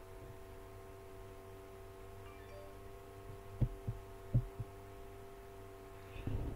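Faint steady hum with several fixed tones, broken about halfway through by four short, soft low thumps close together.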